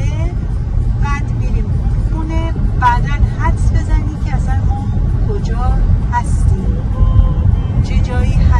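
Steady low rumble of a car's engine and tyres heard from inside the cabin while driving, with voices talking over it.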